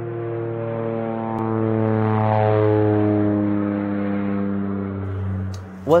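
A sustained droning intro tone, a low hum with a stack of overtones, some of them slowly bending in pitch. It swells to its loudest about halfway through and fades out just before a voice begins.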